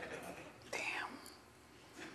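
Faint whispered speech in two short bursts, the second about three-quarters of a second in.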